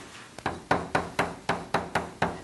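Chalk tapping on a blackboard while writing, a quick run of sharp taps about three to four a second.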